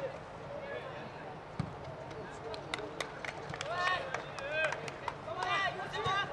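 Players on a football pitch shouting short calls to one another during open play, with several short sharp knocks in between.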